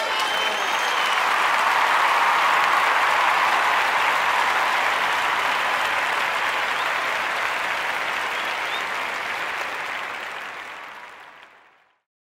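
A room of children applauding, a steady patter of many hands clapping that slowly eases off and then fades out over the last two seconds.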